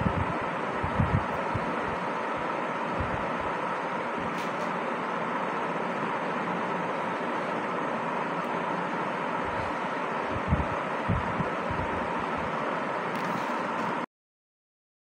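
Steady rushing background noise with a faint hum, broken by a few low thumps on the microphone about a second in and again around ten and eleven seconds in. It cuts off suddenly at the end.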